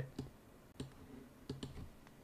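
A few faint, sharp clicks, about four of them spread across two seconds, over quiet room tone.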